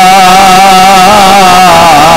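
A man's voice holding one long, wavering sung note, the drawn-out chanted lament of a zakir reciting a Muharram elegy into a microphone.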